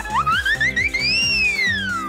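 A cartoon whistle-like sound effect over cheerful background music with a steady beat. The whistle climbs in small steps, arcs to a peak just past the middle, then slides smoothly down.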